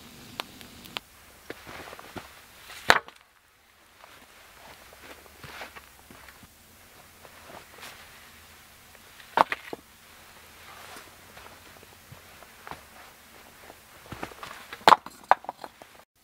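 Irregular rustling and crunching on the forest floor, broken by a few sharp cracks: about three seconds in, about nine and a half seconds in, and a cluster about fifteen seconds in.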